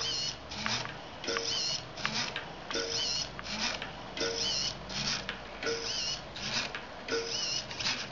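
Small hobby servo whirring in short bursts as it tilts the wire track of an automated gyro wheel toy back and forth: two quick moves about every one and a half seconds, with the spinning wheel rolling on the wire rails. The cycle delay is set to about 0.69 s, at which the toy runs much more efficiently.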